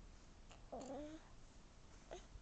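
A house cat giving a single short meow about a second in.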